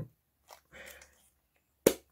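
Plastic parts of a Dyson DC23 turbine head being pressed together by hand: a faint rubbing, then one sharp click near the end as the grey end cap snaps onto the housing.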